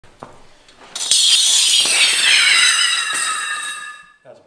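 A Norwood Sabretooth steel sawmill band blade flung from its folded coil and springing open: a sudden loud metallic crash, then a high ringing shimmer that slides down in pitch and fades over about three seconds. A few light clicks come first as the coiled blade is handled.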